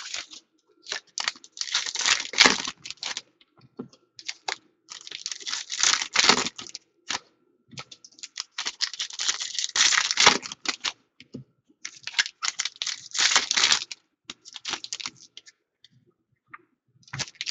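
Trading cards being flicked through and set down on piles: quick runs of dry clicks and slides, in about five bursts of one to three seconds each with short pauses between.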